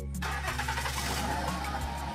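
A Honda Crosstour's engine cranks and starts about a quarter of a second in, then keeps running, over background music.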